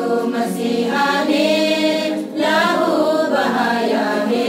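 A women's choir singing a hymn together, sustained sung phrases with a short break a little past halfway before the next phrase.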